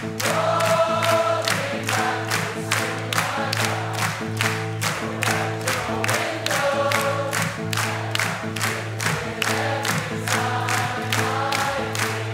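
Live indie-folk band playing: a steady beat of about three strikes a second under sustained bass and chords, with layered group vocals over it.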